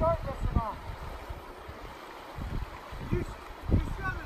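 River water flowing over rocks, with a man's voice briefly at the start and a few low thumps in the second half. No engine is running.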